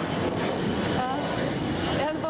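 Twin-engine jet airliner flying low overhead: a steady, loud rush of jet engine noise.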